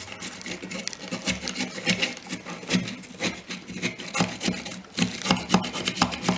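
Raw potato grated on a small metal grater, in repeated rasping strokes about two to three a second.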